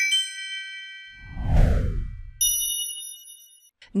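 Animated logo jingle: a quick run of bright bell-like chimes, then about a second in a whoosh that falls in pitch into a low rumble, and a high shimmering ding that rings for about a second near the middle.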